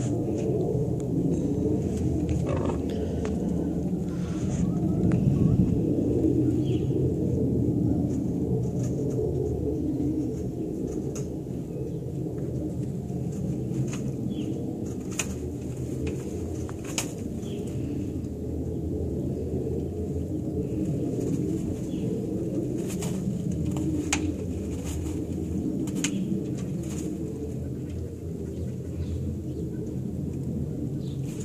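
Hens in nest boxes clucking now and then, faintly, with scattered light clicks, over a steady low rumble.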